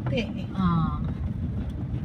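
Car running along a road, heard from inside the cabin: a steady low engine and road rumble, with a brief voice sound about half a second in.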